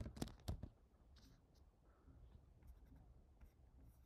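A few computer keyboard keystrokes in the first second, then near silence with a few faint clicks.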